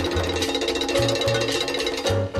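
Latin jazz guajira recording: a fast, even roll of hand-drum strokes over a held chord and a bass line.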